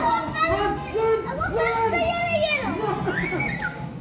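Young children's high-pitched voices calling out and chattering as they play, with a string of rising and falling calls.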